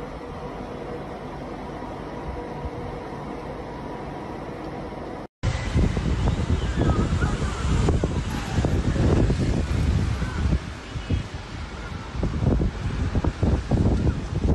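A steady hiss with a faint hum. After an abrupt cut, strong gusty wind buffets a phone microphone, loud and uneven, beside a wind-driven forest fire.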